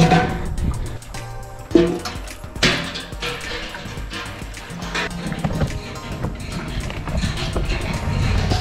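Background music with a steady beat, and two sharp knocks about two seconds in.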